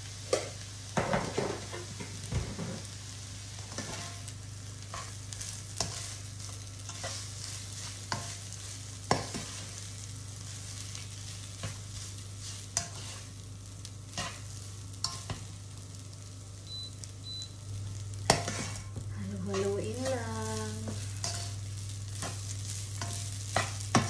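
Garlic fried rice sizzling in a nonstick frying pan while a slotted turner stirs it, with irregular clicks and scrapes of the turner against the pan over a steady frying hiss. A low steady hum runs underneath.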